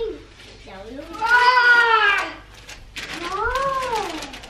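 Two long, drawn-out high calls, each rising then falling in pitch: the first about a second in, the second near the end.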